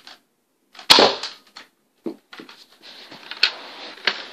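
Nerf blaster firing a single dart about a second in, one sharp pop, followed by rustling and handling noise with a few light clicks.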